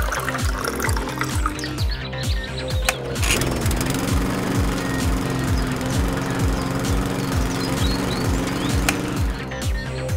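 Background music with a steady beat, with water briefly trickling into a metal can at the start.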